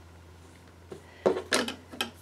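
Fabric scissors being picked up and snipping into a pieced cotton fabric strip: a short cluster of clicks and snips about a second and a quarter in, after a quiet start.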